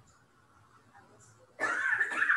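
A cat meowing once, loud and drawn out, starting near the end.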